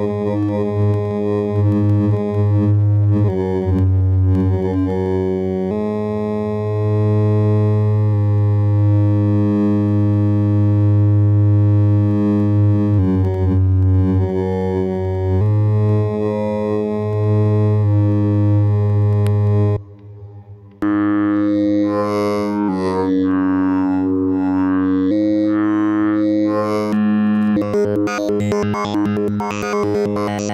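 Expert Sleepers Disting mk4 Eurorack module running as a wavetable oscillator, playing held synth notes that change pitch every few seconds. About two-thirds of the way through the sound cuts out for about a second, then returns brighter and buzzier.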